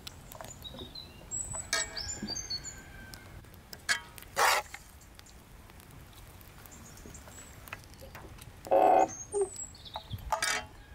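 Small birds chirping in short high calls, with a few short, loud scrapes of a metal spoon against a cast-iron pan, the loudest near the end, as quinces are hollowed and stuffed.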